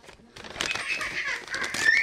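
Brown paper bag rustling and crinkling as it is pulled open by hand, starting about half a second in and getting loudest near the end.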